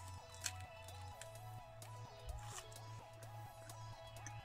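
Quiet background music: a simple stepping melody over repeating bass notes. A faint crunch about half a second in as a puffed-corn snack roll is bitten, then soft chewing.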